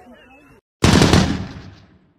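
A channel-logo sting sound effect: after a brief cut to dead silence, a sudden loud noisy burst hits just under a second in and fades away over about a second.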